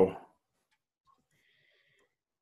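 The end of a man's drawn-out "so", its pitch falling away, then near silence with room tone.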